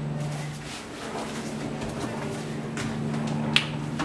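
A steady low hum, with one sharp click near the end.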